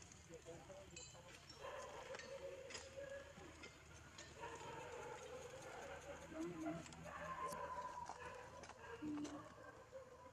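Macaques calling softly: a few drawn-out coo-like tones, each about a second long, with light clicks and taps between them.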